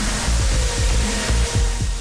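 Electronic radio news jingle or transition sting: a loud, dense whooshing wash over a deep bass beat, with a tone slowly falling in pitch.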